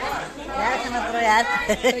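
Several voices talking over one another: group chatter in a room.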